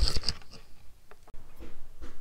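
Handling noises on a workbench: a few short knocks and rustles at the start, then quieter rustling, broken by a sudden dropout just past the middle.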